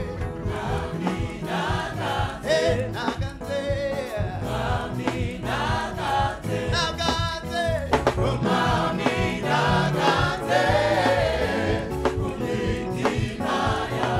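A gospel choir singing in full voice through microphones, backed by a live band with a drum kit keeping a steady beat.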